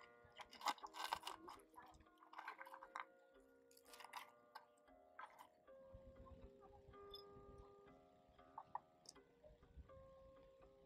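Soft background music with held notes. Over the first five seconds or so come quick dry crackles and crunches as a block of aged pomelo tea is snipped with small clippers and crumbled by hand. Later a faint low rumble sits under the music.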